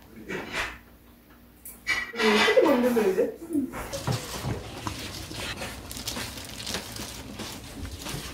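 A brief wavering voice, then a run of light clinks and clicks of kitchen work at the counter.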